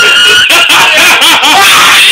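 Loud, distorted laughter and shrieking. A high held squeal fades in the first half-second and gives way to a quick run of ha-ha-ha bursts.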